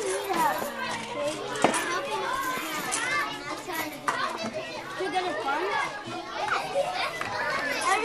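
Classroom chatter: many children talking at once, no single voice standing out, with one sharp click a little under two seconds in.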